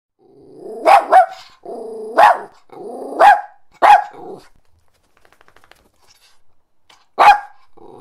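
Small dog growling and barking: short growls that break into sharp yaps, about five barks in the first four seconds, then a pause and one more bark near the end.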